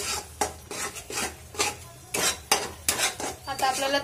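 Spatula stirring and scraping thick paneer masala gravy around a metal kadhai as it cooks down, an irregular run of scrapes and knocks against the pan.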